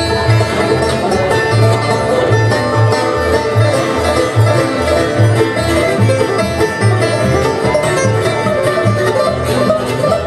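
Bluegrass band playing an instrumental break between vocal lines: fiddle, banjo, mandolin and guitar over an upright bass keeping a steady beat.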